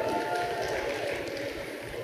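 Audience clapping and calling out in answer to a question from the stage, a steady mix of applause and scattered voices.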